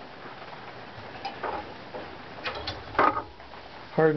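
A handmade steel scraper tool clicking and scraping lightly against a wooden violin back plate as it is handled: a couple of soft clicks, then a cluster of sharper clicks, the loudest about three seconds in.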